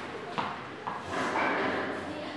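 A ball tapping on a hard stone floor twice, about half a second apart, followed by about a second of shoes scuffing on the floor.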